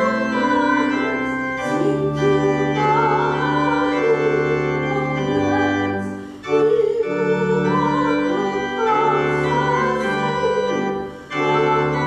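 Organ music: sustained chords moving in phrases, breaking off briefly about six seconds in and again near the end.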